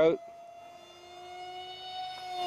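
An A2212/5T 2700 kV brushless outrunner motor turning a Gemfan Flash 6042 two-blade propeller on an RC park jet in flight: a steady whine that rises slightly in pitch and grows louder toward the end.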